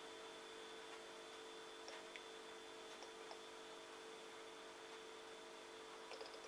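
Near silence: a faint steady hum of room tone, with a few faint light clicks.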